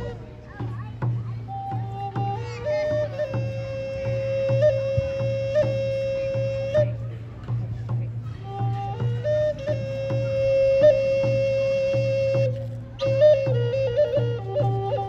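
Native American flute playing a slow courting song: phrases of long held notes, each decorated with quick flicks of pitch, with short breaks between phrases about seven and thirteen seconds in.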